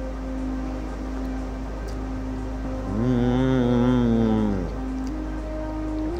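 Background music with steady held tones. About three seconds in, a louder pitched sound swells up and falls away over under two seconds.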